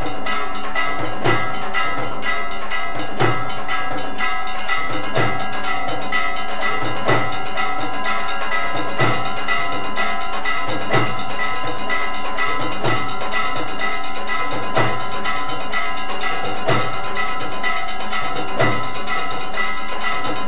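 Temple aarti accompaniment: bells ringing continuously over a steady drum beat of about one stroke a second, with clanging percussion and no singing.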